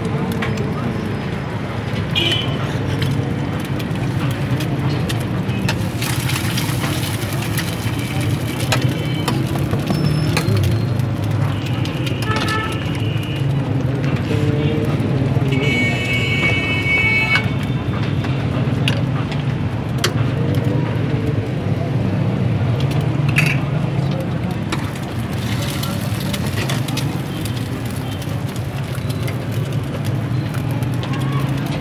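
Busy street-stall ambience: a steady hum of traffic and background voices, with two brief high tones around the middle and a few sharp clicks later on.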